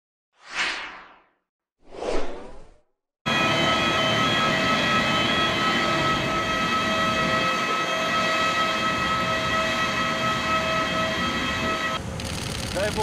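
Two short whooshes from a logo intro, then, a little over three seconds in, the sudden start of a steady whine and rush from a parked jet airliner running, with several fixed high tones held throughout.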